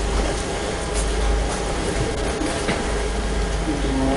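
Steady rumbling and rustling handling noise from a handheld microphone carried by someone walking, with a few faint clicks.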